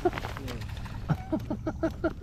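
Voices talking in the background over a low, steady hum.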